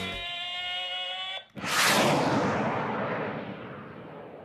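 The soundtrack's final guitar chord rings out and fades; after a brief gap, a sudden whoosh-like burst of noise hits and decays slowly over about two seconds, a sound effect for the logo reveal.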